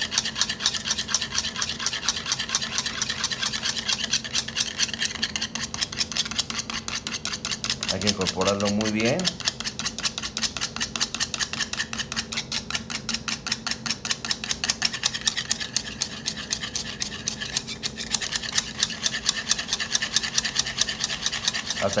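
Wire whisk beating egg yolk in a small bowl, its wires scraping and clicking against the bowl in rapid, even strokes. The yolk is being whisked until foamy, the first stage of a hand-whisked emulsified dressing before the oil goes in.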